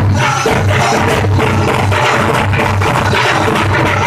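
Daf frame drums beaten together in a fast, steady rhythm, with a crowd of men chanting zikr in chorus underneath.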